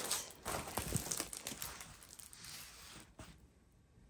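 Clear plastic protective film on a diamond painting canvas crinkling as it is pulled back over the canvas, fading out after about two and a half seconds, with one short tick about three seconds in.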